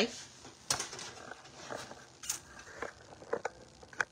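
Handling noise from a phone being carried and set in place: a scattering of faint, sharp knocks and rustles.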